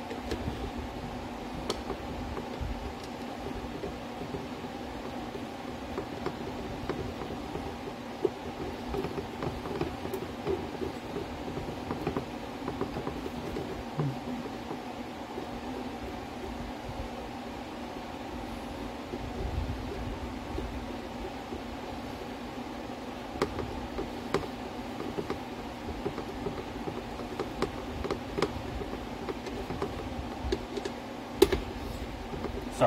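A steady mechanical hum, with small scattered clicks and creaks from a screw being turned by hand with a screwdriver into a hollow plastic housing.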